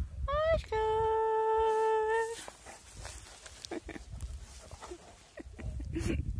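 Large long-haired dog giving a short howl: a rising note that settles into one steady, held tone for about a second and a half, followed by faint rustling.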